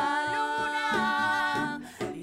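Two women's voices holding one long wordless sung note together over a softly played acoustic guitar; the note ends shortly before the end.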